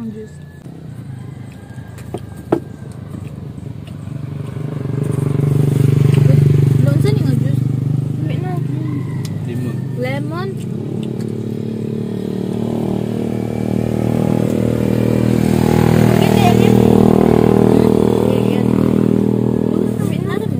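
A motorcycle engine running close by, building up about four seconds in and staying loud, loudest around six seconds and again around sixteen seconds. A single sharp click comes just before it, and voices are heard faintly over it.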